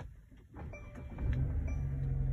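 A click, then a steady low hum in a car's cabin that swells up about a second in.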